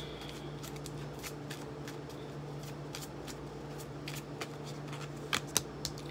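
Tarot cards being shuffled and handled by hand: a run of light papery card clicks, with a few sharper snaps near the end.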